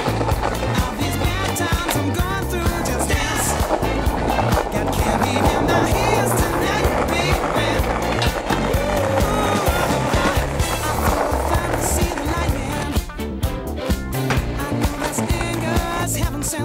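Music with a steady beat, mixed with skateboard sounds: polyurethane wheels rolling on concrete and the clacks and scrapes of tricks on a metal rail.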